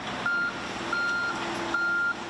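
A construction machine's warning alarm sounds three evenly spaced high beeps, a little under a second apart. Under it an excavator's engine runs steadily while the machine digs.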